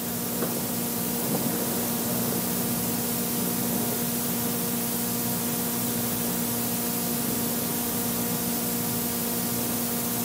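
Steady hiss with a low, even electrical hum: the background noise of the recording itself, with no voice over it. Two faint clicks come in the first two seconds.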